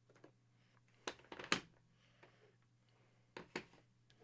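A few short, sharp clicks and knocks, about four in two pairs, from autographed hockey pucks being handled and put away on a desk.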